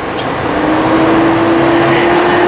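A vehicle engine running: a steady hum under a rushing hiss that grows slowly louder, its pitch creeping gently upward.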